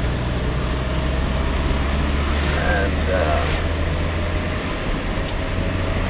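Car engine and road noise inside a moving car's cabin: a steady low drone with a hiss of tyre and wind noise. Faint voices come through about halfway.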